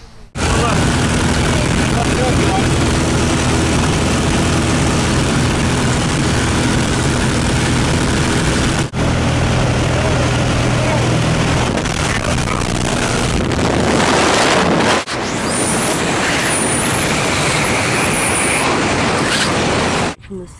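Small jump plane's engine and propeller droning, with loud wind rushing through the open door onto the microphone. In the later part the steady engine tone fades out under a louder rush of wind, and there are two brief breaks in the sound.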